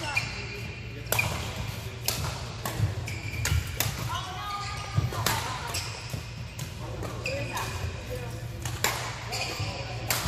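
Badminton rackets striking a shuttlecock in a rally, sharp cracks about once a second, with sneakers squeaking on the court floor and a low steady hum in the hall.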